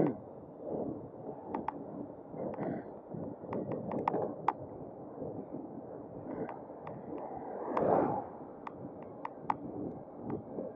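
Wind and tyre noise of a bicycle rolling along a tarmac lane, with scattered sharp ticks and rattles. A passing car swells up and fades about eight seconds in.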